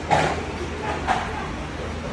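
A dog barking twice, about a second apart, the first bark the louder.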